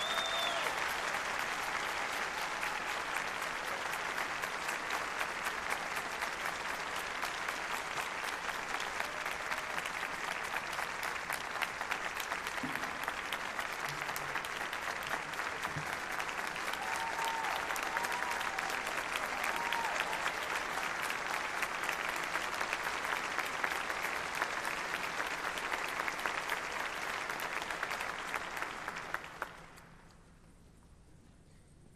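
A large audience applauding steadily, the clapping dense and even, dying away just before the end.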